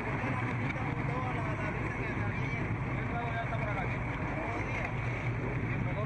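A boat engine running steadily with a low hum, with wind on the microphone.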